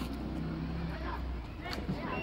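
Indistinct voices of people talking over a low, steady hum that fades out about one and a half seconds in.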